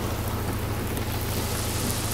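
Steady hiss of rain with a constant low hum underneath during a thunderstorm.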